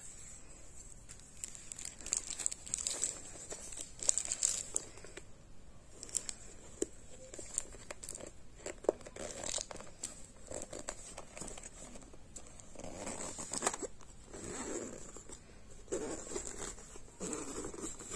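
A zippered travel case being handled, closed and zipped shut: scratchy rustling and irregular small clicks, with crinkling of the plastic wrap on the zipper pull.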